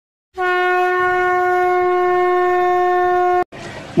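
A single horn-like tone with many overtones, held at one steady pitch for about three seconds and cut off abruptly.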